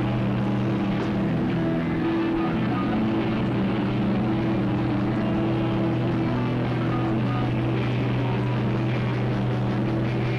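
Live rock band's distorted electric guitars and bass holding a loud, droning chord. The held notes shift about two seconds in and again near six seconds.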